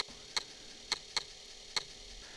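Emulated Commodore 1571 disk drive clicking while the program loads from disk: about five sharp clicks at uneven intervals.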